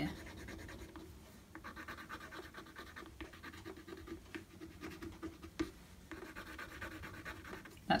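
The end of an old paintbrush handle scratching into paint on cold-pressed watercolour paper, quick short strokes in two runs, with one sharp tap a little past halfway.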